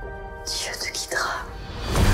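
Film trailer soundtrack: a sustained music chord under breathy, whispered vocal sounds, swelling to a loud low hit at the very end.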